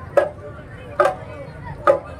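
Marching drum band percussion striking a slow, steady beat: three sharp hits about 0.8 s apart, each with a short ring, over a low murmur of crowd voices.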